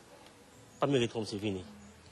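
Speech only: a man's voice says a short phrase about a second in, after a brief pause with low background noise.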